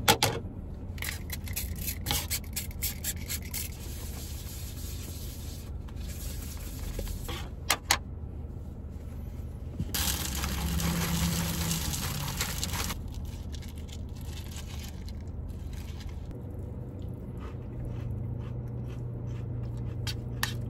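Preparing a bowl of cereal: packaging rustling and scraping, dry cereal poured into a bowl, then milk poured in over a few seconds, with a few sharp clicks of the containers.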